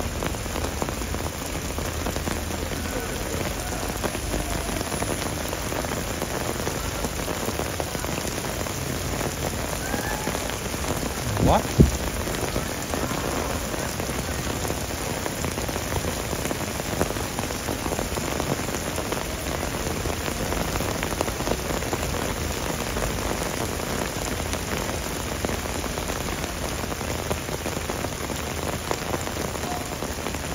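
Heavy rain pouring down and splashing on paving and puddles, a steady hiss. One short, sharp sound stands out a little before halfway through.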